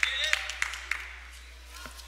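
A few people clapping by hand, about three claps a second, dying away after about a second, with faint distant voices underneath.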